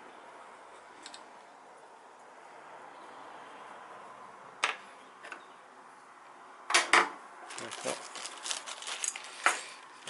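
Small wooden-handled turning chisels clinking and clattering against each other and the workbench as they are handled. This comes after a faint steady hiss, with two loud knocks about seven seconds in, then a run of quick rattling clicks.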